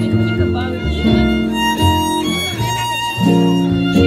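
Live acoustic string trio playing an instrumental passage: fiddle over acoustic guitar and upright double bass, with the chords changing about once a second.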